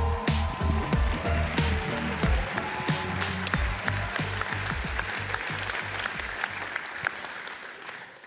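Audience applause over stage music with a heavy bass beat; the music fades out near the end as the clapping dies down.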